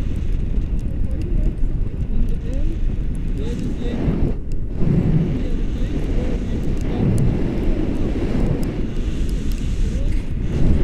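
Wind buffeting the camera microphone in flight under a paraglider, a steady loud low rumble.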